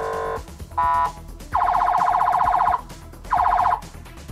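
Four loud blasts of an electronic horn tone, each steady in pitch: a short lower one, two short higher ones, a longer one of just over a second, then another short one near the end.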